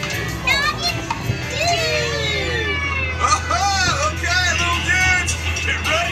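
A dark-ride soundtrack: music with high, child-like, gliding character voices over a steady low hum.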